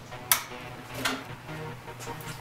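A single sharp click about a third of a second in, over a faint low hum.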